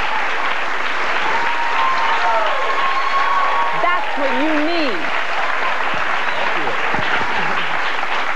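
Studio audience applauding steadily, with voices talking over it.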